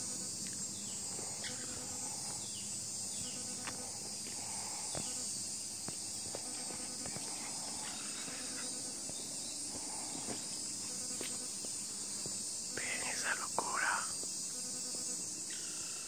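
Steady, continuous high-pitched chorus of forest insects, an even buzz that does not let up. Soft whispered voices come in briefly near the end.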